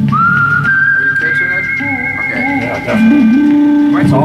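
Music playing over small studio monitor speakers: a high, smooth lead line holding long notes and gliding between them, over a low bass line.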